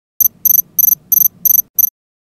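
Electronic alarm beeping: six short, high-pitched beeps, about three a second, the last one cut short as a hand reaches out and switches it off.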